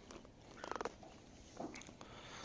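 Young Silesian horse giving two soft, fluttering snorts through its nostrils, the first about half a second in and a shorter one near the end.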